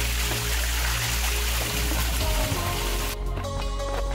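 Small waterfall pouring into a shallow pool, a steady rush of falling water, under background music with a steady beat. The water sound cuts off abruptly about three seconds in, leaving only the music.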